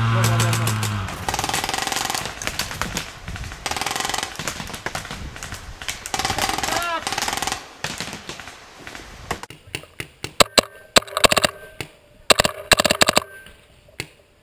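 Paintball markers firing in fast, overlapping strings of pops, with a brief shout in the middle; in the last few seconds the shots come as fewer, sharper single pops close by.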